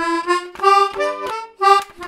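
Hohner Kids mini button accordion playing a waltz melody, a run of short reedy notes with a chord sounded about a second in and a brief break near the end.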